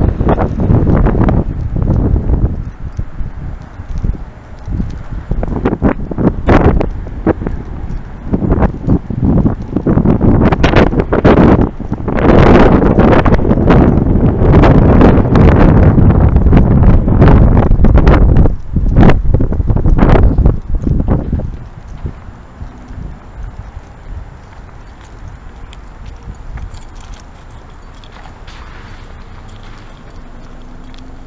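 Wind buffeting a handheld camera's microphone in strong gusts, a loud rumble broken by frequent irregular knocks, easing to a much lower rumble about 22 seconds in.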